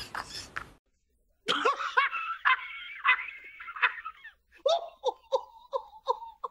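Laughter: a man laughing with a few hand claps that cut off within the first second; after a short gap, a high, wavering laugh, then a run of short 'ha-ha' bursts, about three a second.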